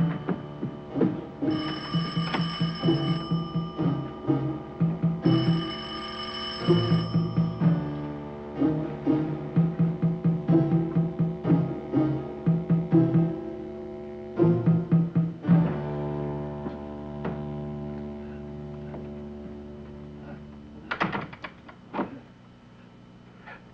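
A telephone bell ringing in three long rings over the first seven seconds and left unanswered, over tense low music of rapidly repeated notes. About halfway through, the music settles into a held low chord, and a couple of knocks sound near the end.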